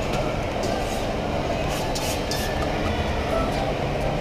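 Steady ambient hubbub of a busy shopping mall: an indistinct murmur of many voices over a continuous low rumble, with a few faint clicks.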